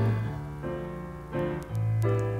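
Piano playing held chords over low bass notes, with no singing. The notes fade to a softer stretch, then new chords come in about a second and a half in.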